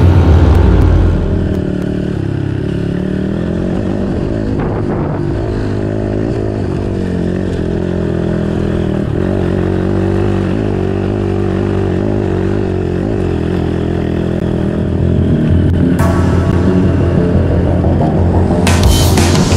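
Dirt bike engine running under way on a rough trail, its pitch rising and falling with the throttle. It is louder in the first second and again near the end.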